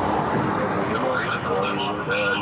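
A vehicle passing on the street beside the stop, with a person's voice starting about a second in.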